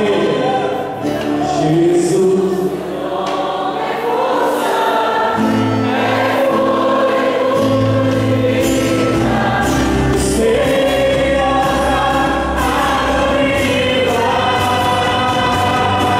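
Live contemporary worship music: several voices singing together over a band of guitars, keyboard and drums, with the low bass and drums coming in about five seconds in.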